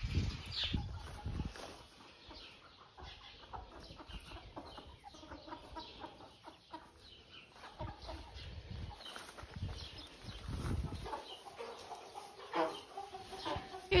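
A flock of Cornish meat chickens clucking softly in short, scattered calls.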